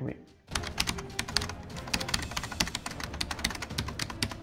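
Fast typing on a computer keyboard: a quick, uneven run of key clicks that starts about half a second in.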